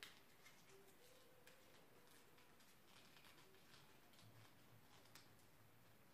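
Near silence: room tone with a few faint, small crackles of a wad of folded paper being worked between the fingers.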